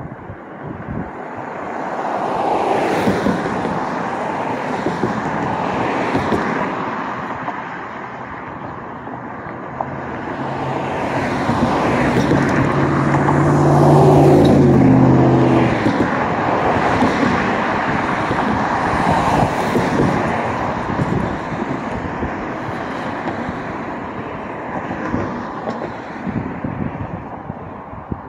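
Street traffic: cars passing one after another, their tyre and engine noise swelling and fading. The loudest is a pickup truck driving close by about halfway through, its engine hum building and then dying away.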